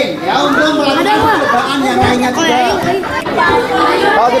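Several children's voices chattering over one another, indistinct.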